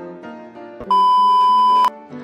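Light keyboard background music, then, about a second in, a loud steady electronic beep held for about a second that cuts off sharply.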